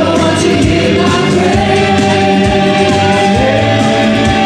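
Live stage music: a vocal group of four singing held harmonies over amplified backing music with a steady beat, played loud through the venue's sound system.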